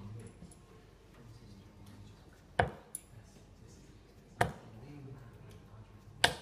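Two darts striking a Winmau Blade 4 bristle dartboard, each a sharp, short impact: the first about two and a half seconds in, the second nearly two seconds later. Faint background chatter runs underneath.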